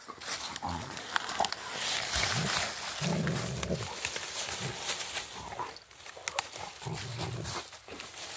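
Two Rottweilers growling in play in low, rough bursts, the two longest about three seconds in and near the end. Under them is the crackle and rustle of dry leaves and twigs as the dogs tussle over a fallen branch.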